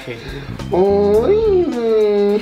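A coy, drawn-out "uuuy!" exclaimed by one voice, starting about halfway in, swooping up and back down in pitch and then held on a level note, with background music underneath.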